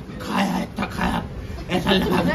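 A man's voice making wordless, animal-like vocal sounds, done as a comic impression.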